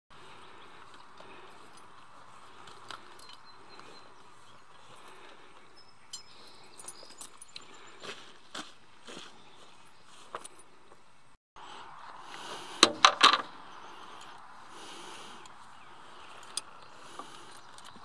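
Scattered light clicks and knocks of horse tack being handled, then a quick cluster of loud metallic clinks a little past the middle from the bridle's bit and the chain lead being handled at the horse's mouth.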